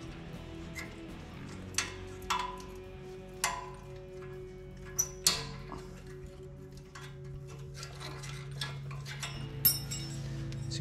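Background music with held notes, over which hand tools clink sharply about six times as a ball-joint retainer clip is worked out of a truck's steel steering knuckle.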